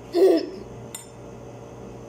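A spoon knocking and scraping against a ceramic bowl of rice: one louder clatter about a quarter second in, then a light click about a second in.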